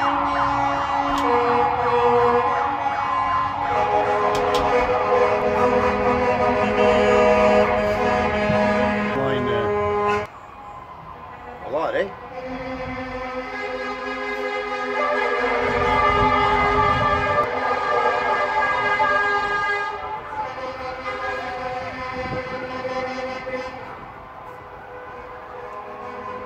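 Sirens and long, steady horn blasts from a passing convoy of emergency vehicles and trucks, several pitches sounding at once. The sound drops off sharply about ten seconds in, a single siren sweep follows, and then the horns build up again.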